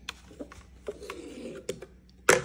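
A few light plastic clicks and rubbing as the spout nozzle of a Magic Bullet Mini Juicer is turned to close it against dripping.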